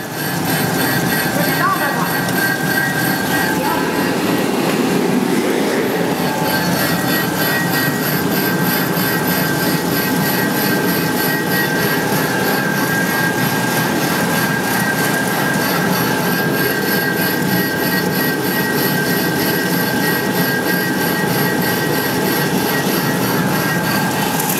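LFQ slitter rewinder running, its rollers and slitting shafts carrying a printed web: a steady mechanical noise with a constant high whine.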